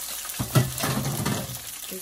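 Chopped onion, sweet peppers and tomato sizzling in hot coconut oil in a stainless steel pan. About half a second in, a spoon knocks against the pan, then scrapes through the vegetables as they are stirred.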